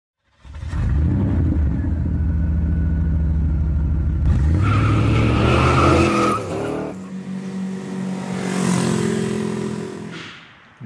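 A car engine running hard at speed, with a high squeal for a second or two in the middle. The sound changes sharply a little after six seconds in, then the engine runs on more steadily.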